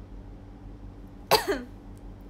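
A woman's short cough about a second and a half in: a sharp burst and a smaller second one right after it.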